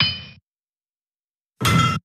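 Two metallic clang sound effects for an animated logo: a ringing hit at the start that fades away within half a second, then a second, brighter clang near the end that cuts off abruptly.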